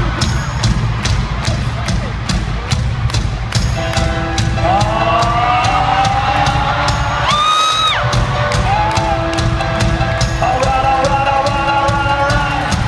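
Live arena concert heard through a phone's microphone: loud amplified band music with a steady drum beat and heavy bass, under crowd noise. Around the middle a voice rises in a long glide and then holds a high note while the bass drops out for a moment.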